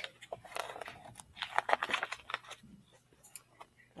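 Glossy pages of a picture book being handled and turned, a quick run of crisp paper rustles and small clicks that dies away in the second half.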